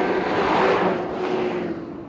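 A 4x4 off-road vehicle driving past at speed over firm desert sand. Its engine and tyre noise swell to a peak just under a second in, then fade as it moves away.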